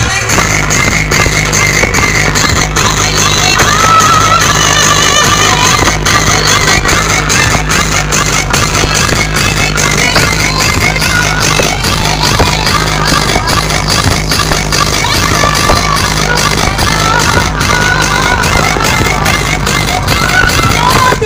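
Loud electronic dance music with a heavy, steady beat and strong bass, played through a street DJ sound system.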